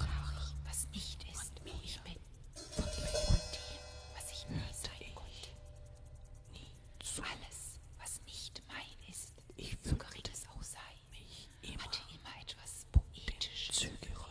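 Quiet, fragmented whispering from a recorded voice in the electronic part, with a few sparse, sharp clicks.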